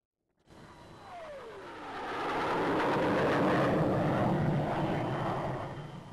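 Jet aircraft flying past: after a brief silence, engine noise swells over the first few seconds and holds, with a whine that drops in pitch about a second in.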